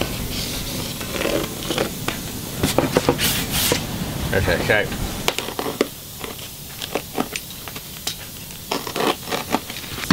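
A corrugated plastic template sheet being handled and worked on: scattered clicks, rustles and scraping strokes, with a brief hiss a little over three seconds in.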